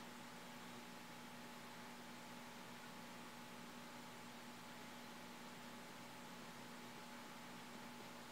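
Near silence: a steady hiss with a faint electrical hum, the recording's own background noise.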